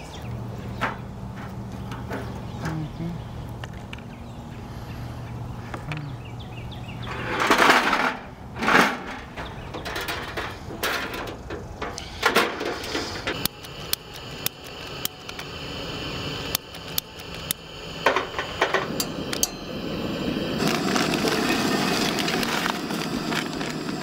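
Knocks and clatter as a Coleman two-burner propane stove is handled and its lid and windscreen flaps are opened on a wooden picnic table. In the last few seconds there is a steady sizzle from diced potatoes frying in a cast iron skillet on the stove.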